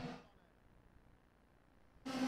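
Near silence: the audio almost drops out, with only the tail of a man's voice fading away at the very start.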